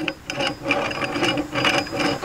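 Angle-grinder bevel-gear head, used as the propeller gearbox, being turned by hand through its drive shaft: a run of quick clicks as the gear teeth mesh.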